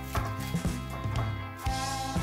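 Background music with a steady beat and sustained tones.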